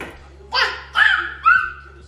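Baby squealing: three short, high-pitched cries about half a second apart, the last held a little longer.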